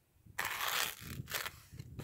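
A knife blade slicing down through a foam pool noodle, the foam rasping as it is cut. There is one long stroke about half a second in and shorter ones after it. The knife is a Bestech Ascot folder with a D2 drop-point blade.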